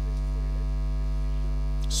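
Steady electrical mains hum in the microphone and sound-system chain: a constant low buzz with a ladder of evenly spaced overtones, unchanging throughout.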